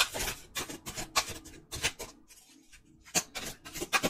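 A deck of tarot cards being shuffled by hand: a quick run of crisp flicking and rubbing card sounds, a short pause past the middle, then more shuffling.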